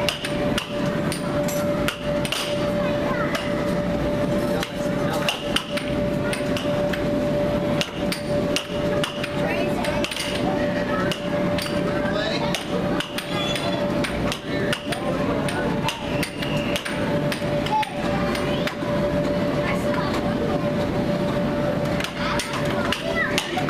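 Air hockey mallets striking the plastic puck and the puck clacking off the table's rails: quick, irregular sharp knocks throughout, over a steady hum and a background of voices.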